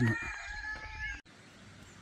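A cockerel crowing, one held call that is cut off suddenly just over a second in, leaving only a faint steady hiss.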